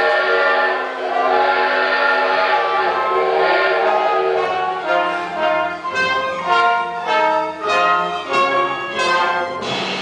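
A theatre orchestra with brass and strings plays musical-theatre music. The chords are held at first, then from about five seconds in they turn to short, separated chords in a rhythmic pattern.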